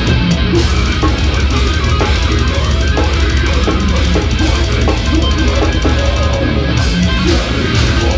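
Technical death metal band playing live at full volume: distorted electric guitars over a drum kit played without a break.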